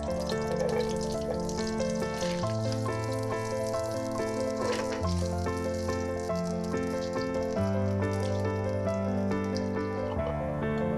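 Garlic slices sizzling in hot oil and butter in a frying pan, a steady hiss with faint crackles, under piano background music.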